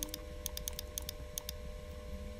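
Quick, irregular computer mouse clicks, about ten in two seconds, often in close pairs, as pen-tool anchor points are placed, over a faint steady hum.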